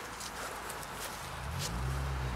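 Footsteps, a few short scuffs, over a steady background hiss; a low rumble comes up near the end.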